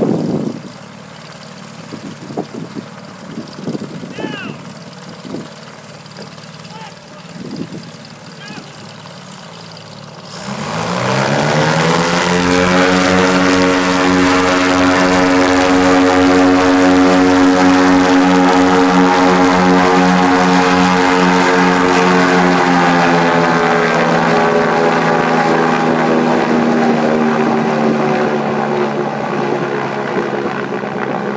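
Goodyear blimp's propeller engines run quietly at first. About a third of the way in they throttle up to take-off power, the pitch rising quickly and then holding as a loud, steady drone as the airship lifts off. The drone eases slightly near the end as the airship climbs away.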